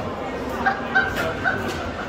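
Foosball ball and rods clacking in quick play, a few sharp knocks in a row, with three short high-pitched yelps about a second apart over the hall's background chatter.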